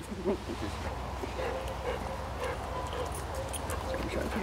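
Faint dog sounds over a quiet outdoor background, with one short, louder sound just after the start.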